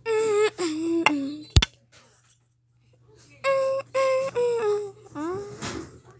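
A child's voice singing a short wordless tune in two phrases. The notes are held and step down in pitch. A sharp click comes between the phrases.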